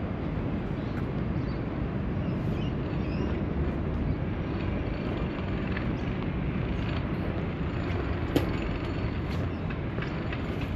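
Steady low rumble of distant city traffic, with one sharp click about eight seconds in.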